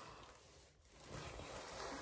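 Near silence, then from about a second in a faint rustle of a large diamond painting canvas being handled.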